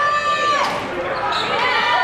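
A basketball bouncing on a hardwood gym floor during play, amid players' voices in the large, echoing gym.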